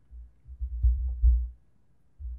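Low, muffled thumps and rumble with no voice, picked up by a shirt-clipped wireless lavalier microphone in a wind muff while the wearer walks. The rumble comes in uneven pulses for most of the first second and a half, then drops away.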